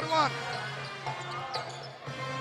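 Basketball arena ambience during live play: crowd murmur with a ball being dribbled on the hardwood court.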